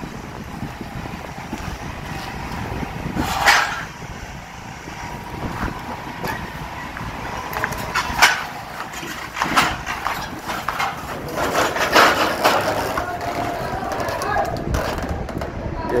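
Steel shoring props knocking and clanking against one another in irregular knocks, thickest around twelve seconds in, as a bundle of them is belted and hoisted by the crane.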